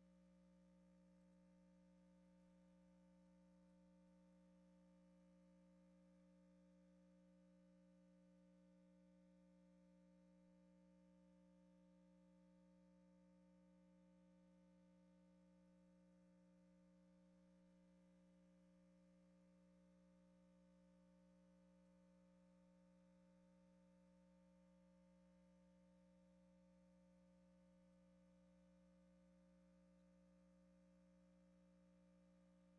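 Near silence: only a faint, steady hum of a few fixed tones, unchanging throughout.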